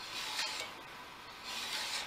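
A file pushed along the edge of a steel card scraper held in a bench vise: two rasping forward strokes, one at the start and one near the end. It is jointing the edge, flattening the crown and cutting away the work-hardened steel so a fresh burr can be turned.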